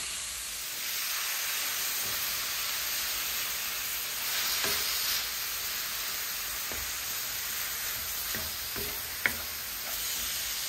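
Minced beef sizzling in a hot non-stick frying pan with onions and tomato, stirred with a wooden spoon. The sizzle gets louder about a second in and swells around the middle, with a couple of sharp knocks as it is stirred.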